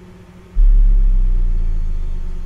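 A deep, low rumble that starts suddenly about half a second in and slowly fades, laid over a faint low drone: a bass rumble sound effect marking the cut to the car body.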